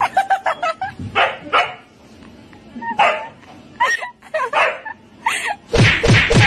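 A dog barking and yipping in short separate bursts, with a louder run of barks starting just before the end.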